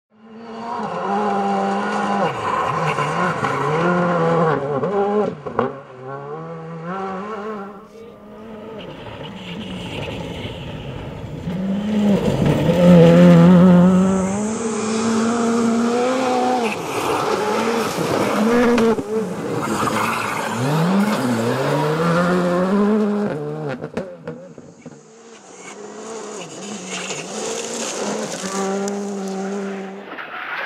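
Rally car engines at full throttle on a gravel stage, the note climbing through each gear and dropping back at every shift. Loudest a little past halfway as a car passes close.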